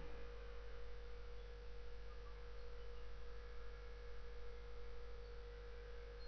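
Faint steady electrical hum: a constant mid-pitched tone over a low drone and light hiss, with no other sound.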